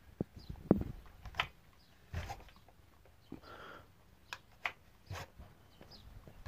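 Husqvarna 359 chainsaw's recoil starter rope pulled by hand against compression, the engine not firing: a few short, quiet pulls and knocks as the 60 cc engine is turned over to show that it has plenty of compression.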